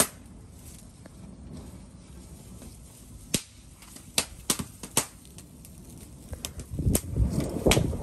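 A small fire of dry stalks and newspaper crackling as it catches, with sharp scattered pops. A low rush of flame builds over the last second or so as the fire flares up.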